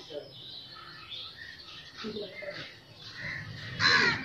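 Small birds chirping: scattered short calls throughout, with one louder, sharper call just before the end.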